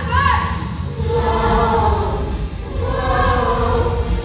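A children's chorus singing a song over musical accompaniment, with a few notes held for about a second.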